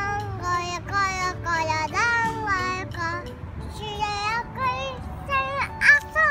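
A young child singing a tune in a string of short held notes that slide in pitch, with a brief pause about halfway, over a low steady background hum.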